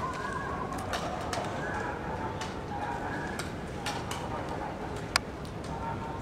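Outdoor courtyard ambience with birds calling and faint voices, under scattered sharp clicks of a guard squad's boots and rifles on stone paving as it forms up; one loud clack about five seconds in.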